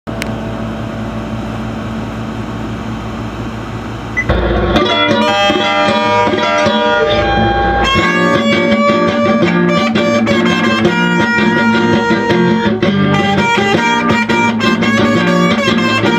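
Electric guitar music: a steady low drone, then quick melodic guitar notes coming in about four seconds in, the playing growing fuller and denser about eight seconds in.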